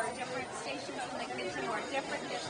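Chatter of many people talking at once in a busy restaurant, overlapping voices with no single speaker standing out.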